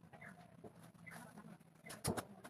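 Near silence: a faint outdoor background with a few short, distant animal calls.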